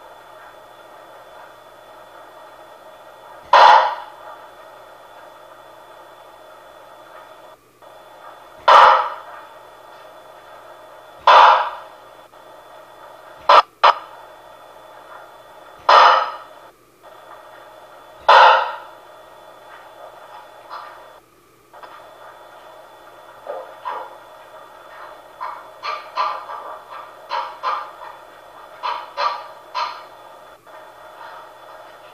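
A small child's short cries coming through a baby monitor's speaker over its steady hiss: six loud cries two to three seconds apart, then quieter fussing sounds near the end.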